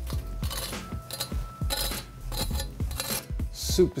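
Knife blade scraping and tapping across the crisp, rendered fat cap of a smoked pork rib roast, making a quick series of super crunchy rasping scrapes that show the crackling has crisped hard.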